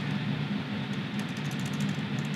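Typing on a laptop keyboard: a run of faint key clicks in the second half, over a steady low background hum.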